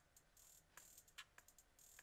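Faint playback of a simple trap drum loop at 148 BPM: a few scattered hi-hat and percussion ticks, very quiet.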